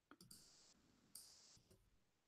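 Near silence broken by a few faint clicks, a cluster near the start and another about a second in.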